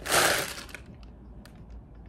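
A short, loud rush of breath lasting about half a second, a person reacting to a bad smell. It is followed by a few faint handling clicks from the packaging.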